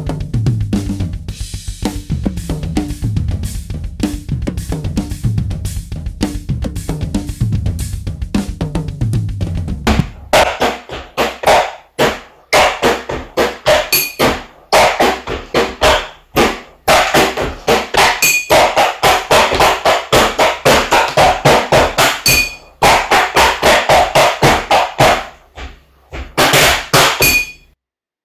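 A full drum kit with bass drum, snare and cymbals playing a busy groove. About ten seconds in it gives way to a groove drummed with sticks on household objects: a stainless steel cooking pot and a plastic box, with crisp clicks and the pot now and then ringing. The playing stops just before the end.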